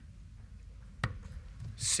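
A steel-tip dart striking a Winmau bristle dartboard about a second in: a single short, sharp impact over a low steady room hum.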